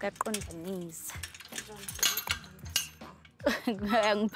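Metal gate hardware clinking and rattling, a quick run of sharp metallic clicks, as a chain-link gate's latch and chain are worked; voices briefly at the start and end.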